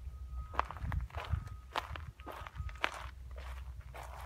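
Footsteps walking at a steady pace along a forest trail strewn with dry leaves and pine needles, about two steps a second.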